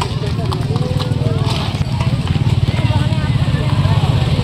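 Outdoor crowd voices and shouts over a steady low rumble.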